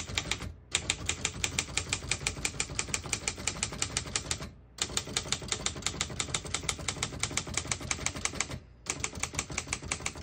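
1954 Underwood Universal portable typewriter being typed on: a fast, even run of key strikes, about seven a second, with three brief pauses.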